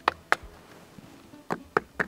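A hand-held stone knocked against a hollow granite gong rock, to find where it sounds hollow: about five sharp knocks, two in the first half-second and three more in quick succession about a second and a half in.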